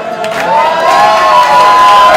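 Crowd of party guests cheering and whooping together, with hand clapping, swelling louder about half a second in.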